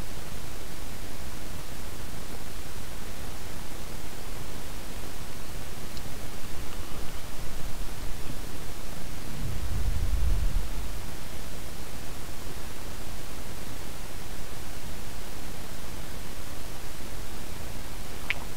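Steady hiss of a microphone's background noise, with a brief low rumble about halfway through.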